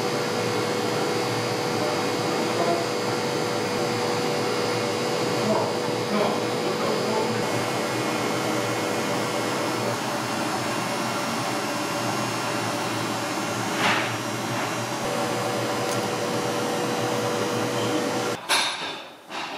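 A steady whirring drone like a running workshop machine or fan, with a constant hum that drops out for a few seconds past the middle. Faint scratches of a pen tracing a paper pattern onto sheepskin leather come through now and then, one a little louder near the end.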